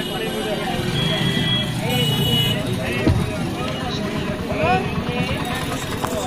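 A bus engine running at low speed in busy street traffic, with many voices chattering around it and a single brief thump about halfway through.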